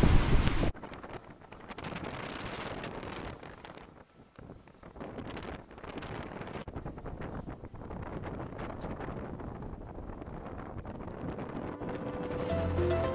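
Wind buffeting the microphone over choppy sea: loud for the first moment, then cutting suddenly to a quieter, gusty rush of wind and water.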